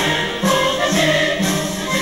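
Music with choral singing.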